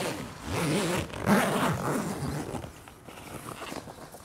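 Zipper on the end wall of an Opus OP4 inflatable annex being pulled along its zip line around the tent fabric. The zipping is loudest in the first two and a half seconds and then dies down.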